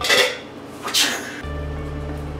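Background music, with a short laugh at the start and a sharp metal clatter about a second in as a spatula is pulled from the utensil holder by the stove.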